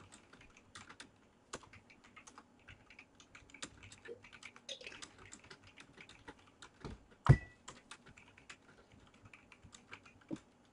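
Typing on a computer keyboard: irregular, quick keystroke clicks, with one louder knock about seven seconds in.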